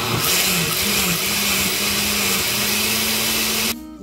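Countertop blender running at speed, puréeing cooked auyama squash with chicken broth into a cream soup. The motor note wavers in the first second, then holds steady, and it stops suddenly just before the end.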